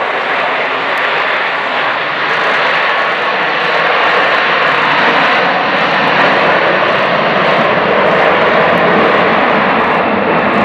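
Engines of a Boeing 777 airliner running at high power as it rolls down the runway: a steady jet roar that slowly grows louder.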